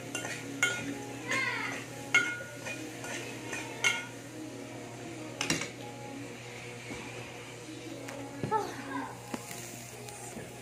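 Metal cooking pot and utensil clinking: several sharp clinks, each with a short ringing tone, spread over the first six seconds, the loudest about two seconds in, over a low steady hum.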